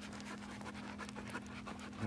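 A dog panting with quick short breaths, over a steady low hum.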